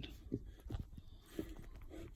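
A few faint, irregular clicks of an Aldi Workzone one-handed ratcheting quick clamp as its trigger is squeezed hard to tighten the plastic jaws onto a block of wood.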